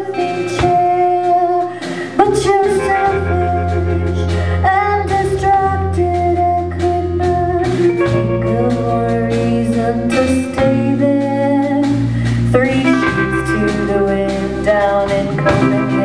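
Live rock band playing: a woman singing over acoustic and electric guitars, with bass guitar and drums. The bass line gets much fuller about three seconds in.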